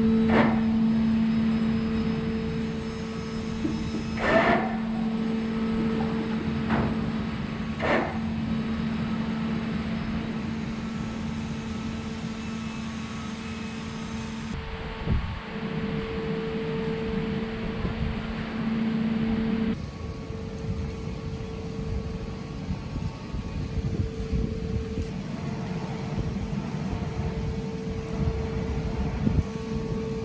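Steady low mechanical hum with a held droning tone over a low rumble, with a couple of brief knocks in the first eight seconds, as the boat lift's caisson descends.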